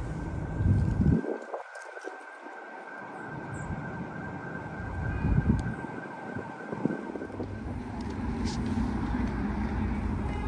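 Distant city traffic rumble, with a faint steady high tone running through most of it that drops away about three-quarters of the way through.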